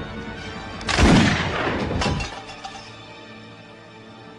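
Film soundtrack music with a loud crash about a second in that dies away over about a second, followed by quieter, sparser music.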